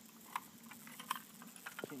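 A few faint, scattered clicks and ticks from a bass being handled while its gill is worked onto a fish scale's hook, with a man's voice starting near the end.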